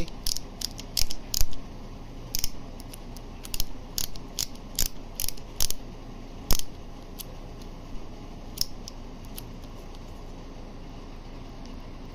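Ratchet adapter of a half-inch breaker bar clicking as it is turned by hand: a run of irregular pawl clicks that thins out and stops a few seconds before the end.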